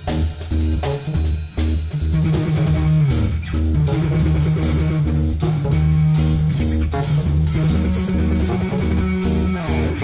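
Live funk trio playing: a loud electric bass line carries the bottom, with keyboards and a drum kit. The drums and cymbals get busier a couple of seconds in.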